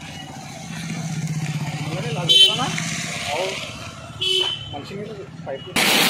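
Street sound: a motorcycle engine running close by, with two short horn toots about two seconds apart and voices in the background. Near the end a loud steady rush of water starts, from the burst drinking-water pipeline spilling onto the road.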